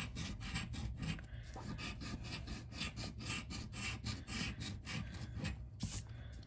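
A coin scratching the coating off a paper scratch-off lottery ticket, in quick back-and-forth strokes, several a second.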